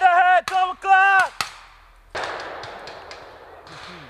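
A soldier yelling loudly in three drawn-out pieces over about a second and a half, then a single gunshot about two seconds in with a long fading tail and a few fainter cracks after it.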